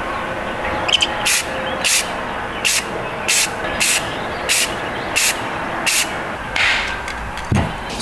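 Aerosol spray-paint can giving about ten short hissing bursts, roughly one every two-thirds of a second, dusting green paint over fishing spoons through a scale-pattern template.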